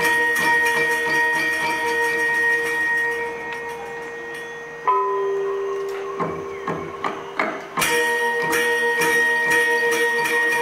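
A Balinese gamelan plays: bronze metallophones and gongs in fast, dense, ringing strokes. The strokes thin out, a single note rings on about five seconds in, a few scattered strokes follow, and the full ensemble comes back in at once near eight seconds.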